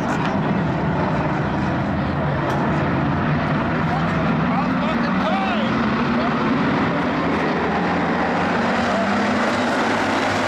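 A pack of IMCA Hobby Stock dirt-track race cars running together in a steady, loud engine drone as the field takes the green flag. The engine note rises slightly through the second half as the cars get on the throttle.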